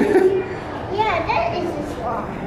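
Children talking and calling out, with other voices over them.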